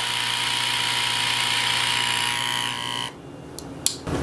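Comgrow Z1 air assist pump running steadily at its highest setting, a hum with a high whine over it. About three seconds in it stops and the sound drops away, followed by two short clicks.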